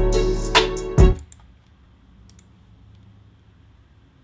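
A hip-hop beat played back from FL Studio, with deep bass and sharp drum hits, stops about a second in. A low hush follows, broken by a few faint clicks.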